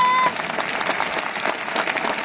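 Stadium crowd applauding: many hands clapping at once in a dense, steady patter, starting just after a man's voice ends a word at the very start.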